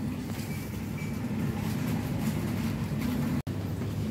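Steady low hum of supermarket background noise, with a brief cut-out about three and a half seconds in.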